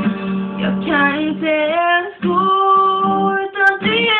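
A woman singing long held notes, accompanied by a strummed nylon-string classical guitar.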